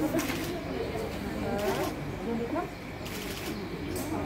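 Indistinct talk of several people in a busy hall, with no clear words.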